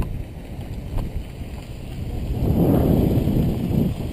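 Wind buffeting the camera microphone: a low, noisy rumble that swells into a stronger gust about halfway through and eases near the end.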